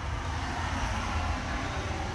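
Steady low outdoor rumble with a light hiss, swelling a little about a second in.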